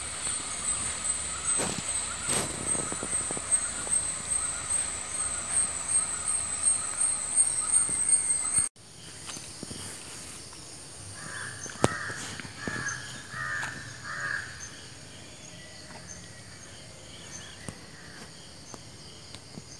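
A steady, slightly pulsing high-pitched insect drone with scattered knocks and rustles, cut off abruptly about halfway through. A few seconds later a crow caws about six times in quick succession over a quiet outdoor background.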